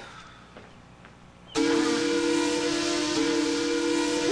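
Steam whistle sound effect: after a quiet first second and a half, a sudden loud whistle of several steady tones over a hissing rush, dipping briefly about three seconds in. It is the comic cue for the thermometer overheating, showing a fever of 182 degrees.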